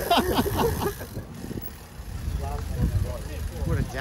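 A man laughing over low wind rumble on the microphone of a moving bicycle. About a second in, the sound cuts to quieter faint voices over a steady low rumble.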